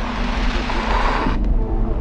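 Rushing noise sound effect over a low, steady drone, cutting off about a second and a half in.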